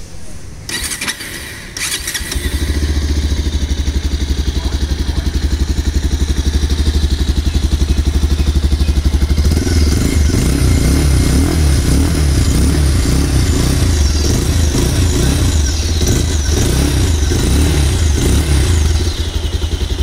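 Bajaj Pulsar 220F's 220cc single-cylinder fuel-injected engine heard at the exhaust. It starts about two seconds in and idles steadily, then from about halfway is revved up and down repeatedly, until it stops suddenly near the end.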